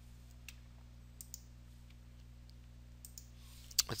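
A few faint, scattered clicks at a computer over a steady low hum.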